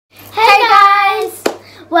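Two girls' voices giving one long drawn-out sung call together, then a single sharp hand clap about a second and a half in.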